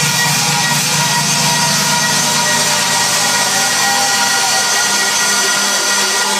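Loud electronic house music from a club sound system, with a buzzing sustained synth line. The bass thins out about a second in while a hissy high layer builds.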